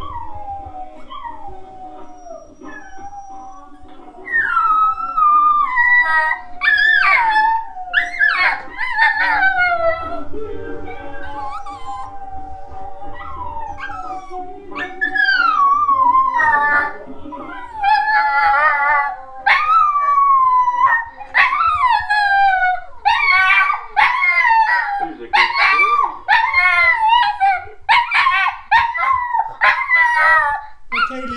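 Border terrier howling in long, falling wails over reggae music playing from a television. The howls get loud about four seconds in and come thick and fast in the last several seconds.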